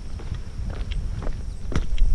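Footsteps walking on a wooden boardwalk, a run of irregular knocks over a continuous low rumble.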